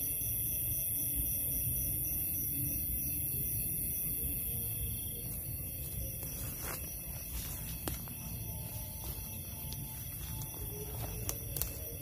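Night ambience in scrub: a steady chorus of high insect tones over a low rumble with faint music in the background, and a few sharp snaps and rustles of footsteps in the undergrowth in the second half.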